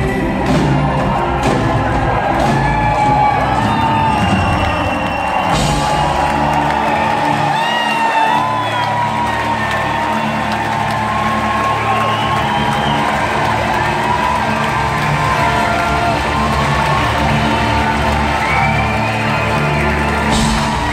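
Live rock band with a string orchestra and choir playing, the music held on sustained chords, with the audience cheering and whooping over it.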